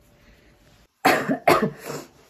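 A woman coughs twice in quick succession, starting about a second in.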